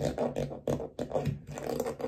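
A hand-held scraping tool dragged in a series of short strokes through wet acrylic paint on a painted canvas, scraping marks into the paint.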